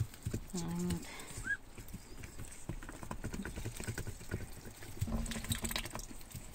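Ducklings feeding from a feeder, their bills pecking and dabbling in the mash and straw in a run of quick light ticks, with one short rising peep about a second and a half in. Brief low hums come near the start and near the end.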